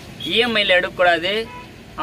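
A man speaking, with a short pause near the end.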